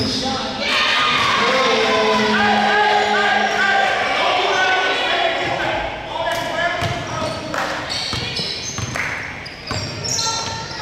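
A basketball bouncing on a hardwood gym floor as a player dribbles before a free throw, with several sharp thuds in the second half. Voices carry through the echoing gymnasium throughout.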